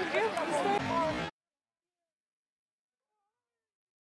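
Men's voices shouting and calling out on an open football pitch, with rising and falling pitch, for about a second; then the sound cuts off abruptly into complete silence.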